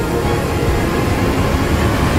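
Loud trailer score under a dense, steady wall of low rumbling noise, a sound-design build that carries through without a break.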